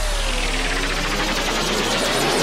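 House music in a DJ mix at a build-up. A falling synth sweep tails off about half a second in, and the deep bass thins out. A rising noise build-up with a fast repeating roll carries the track toward its next drop.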